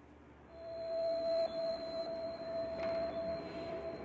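Ambient meditation music fading in: a single steady, pure tone enters about half a second in and is held over a soft hiss.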